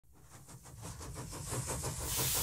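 Small model steam engine running on compressed air, a rapid even chuffing of about seven exhaust puffs a second with hiss, fading in from very faint.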